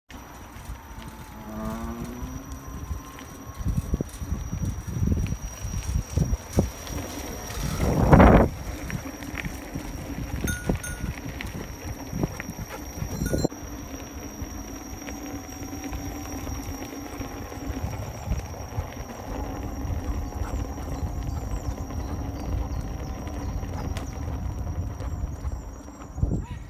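Movement along a gravel path with the camera carried: an uneven crunching and knocking over a constant rumble of wind and handling on the microphone. There is a brief rising whine about two seconds in and a loud rush of noise about eight seconds in.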